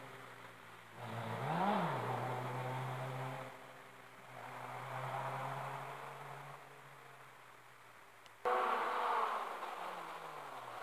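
Rally car engine running at a distance, with a rev that rises and falls in pitch about two seconds in. The sound then settles quieter. Near the end the engine sound abruptly jumps louder.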